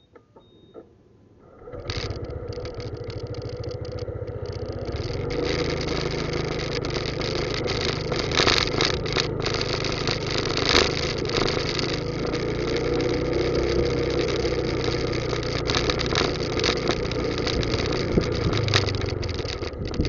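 A vehicle's engine starts abruptly about two seconds in and keeps running as the vehicle moves off, the engine and road noise growing louder over the next few seconds and then holding steady, with a few sharp knocks along the way. A couple of small clicks come just before it starts.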